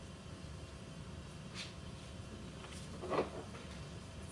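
Quiet room noise with a steady low rumble, a faint click about one and a half seconds in, and a short knock about three seconds in.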